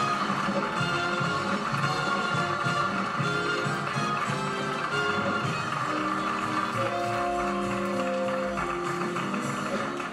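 A television studio band playing a tune over audience applause, heard from an old 1960s broadcast recording.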